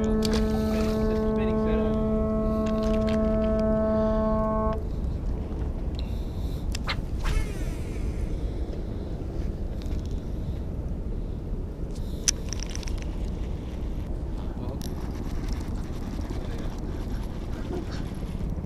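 A marine horn sounds one long, steady, unwavering note that stops abruptly about five seconds in. After it there is a low, steady rumble of wind and water with a few faint clicks.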